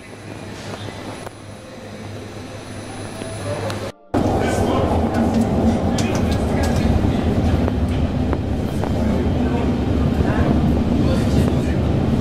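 An REM Alstom Metropolis electric light-metro train running along the track, heard from inside: a loud, steady low rumble and motor hum with scattered light clicks from the rails. It cuts in abruptly about four seconds in, after a quieter hum that grows steadily louder.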